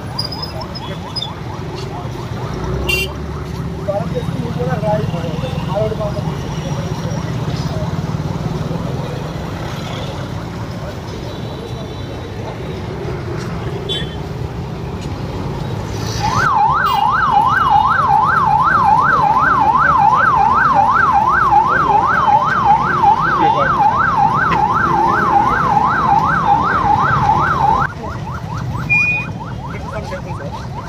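Police vehicle siren in a fast yelp, rising and falling about three times a second. It starts about halfway through and cuts off suddenly near the end, over street traffic and crowd chatter.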